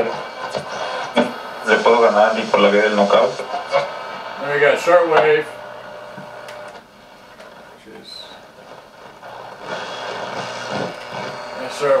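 Broadcast voice playing from the Toshiba RT-SF5 boombox's radio through its own speaker, then giving way about five and a half seconds in to a quieter, steady hiss of radio static.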